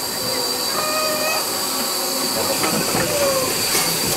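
Goods wagon rolling slowly on its rails behind a steam locomotive, with a steady hiss of steam. A brief wheel squeal comes about a second in, and there is a shorter squeak near the end.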